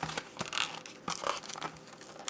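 Cardboard mouse packaging being handled, rustling and scraping in a run of irregular bursts.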